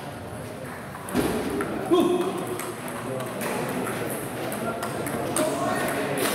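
Table tennis doubles rally: the ball clicks sharply off paddles and the table several times in a large hall, among voices from players and onlookers.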